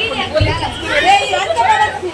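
Several people talking close by, overlapping one another, with a brief low bump about half a second in.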